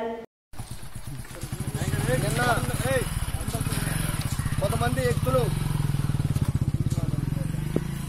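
An engine running steadily close by with a fast, even pulse, starting just after a moment of silence. Voices call out briefly twice over it.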